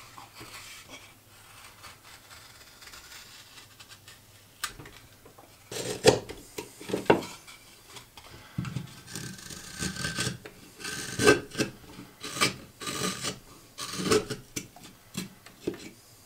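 Carving knife slicing shavings from a wooden boat hull, held in the hand. Light, faint scraping for the first few seconds, then louder, sharper cuts at an uneven pace of about one a second.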